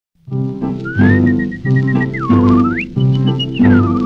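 Whistled melody over a dance band's accompaniment. A single clear whistled tone slides up and holds, dips with a quick wavering trill, swoops up high and holds, then slides down again, over a bouncing rhythm of bass notes and chords.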